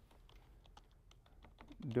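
Faint, irregular keystrokes on a computer keyboard as a short line of text is typed.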